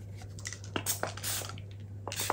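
Light handling of plastic soap-making tools: a few soft clicks and taps and a brief hiss about a second in, over a low steady hum.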